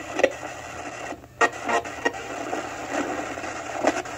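Portable AM/FM radio giving out steady static hiss broken by short crackles and snippets of sound, listened to for a yes-or-no answer. The static briefly drops out about a second in.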